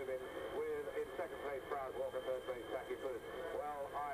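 A man talking continuously on an old radio broadcast recording, with a faint steady high tone underneath.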